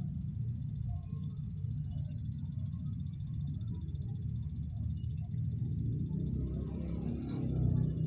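A steady low hum, with faint scattered clicks and small handling sounds, growing a little louder near the end.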